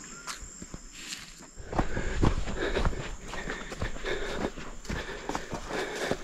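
Footsteps and rustling on dry ground and brush, with scattered clicks, quiet at first and louder from about a second and a half in.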